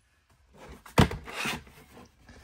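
Dell Inspiron 14 laptop handled on a desk: a sharp knock about a second in, then a short scraping rub.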